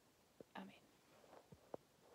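Near silence, broken by a brief soft whispered word from a woman about half a second in and a few faint clicks.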